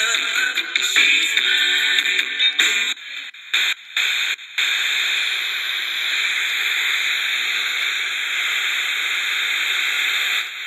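An Eton Elite Mini pocket AM/FM/shortwave radio's small speaker playing music from an FM station for about three seconds, then cutting in and out in short bursts as it is tuned up the band. From about halfway through it gives a steady FM static hiss.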